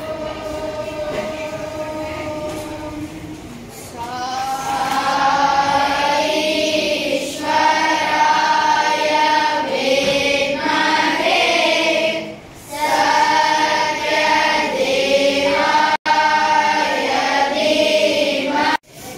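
A class of schoolboys singing a prayer together in unison. The singing grows louder about four seconds in and goes on in held phrases with short breaks between them.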